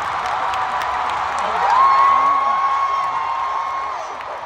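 Large arena crowd cheering and screaming. About halfway through, one high voice holds a long scream that cuts off near the end.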